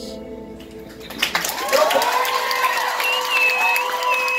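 The last sustained chord on a Nord Stage 3 keyboard dies away. About a second in, the audience breaks into applause and cheering.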